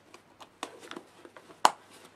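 Hands handling a fabric camera bag: light rustles and small clicks, with one sharper click about one and a half seconds in.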